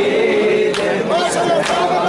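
A crowd of men chanting a mourning lament together, with a few sharp slaps of hands striking bare chests in matam.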